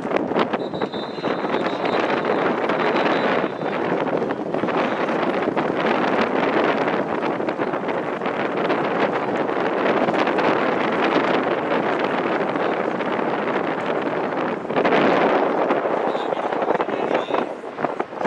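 Steady wind blowing across an outdoor microphone, getting louder about three-quarters of the way through.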